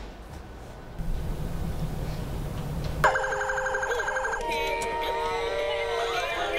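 Battery-powered children's toys making loud electronic noises together. After about three seconds of low hum, a fast warbling siren-like tone starts, then overlapping beeps, gliding tones and electronic tunes follow, pretty loud.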